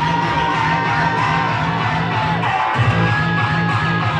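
Loud amplified live band playing, with a fast, steady pulsing bass beat that drops out briefly a little before three seconds in and comes straight back.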